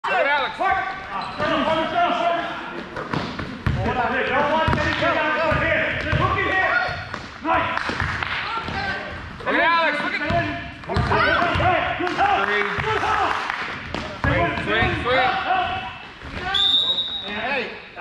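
A basketball bouncing on a gym floor amid many voices and shouts, with a brief high steady tone near the end.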